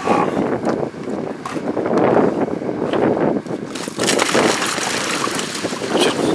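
A cooler-load of whole fish sliding and spilling out of a tipped ice chest onto a wooden deck, a continuous wet, clattering rush that swells in the middle, with wind on the microphone.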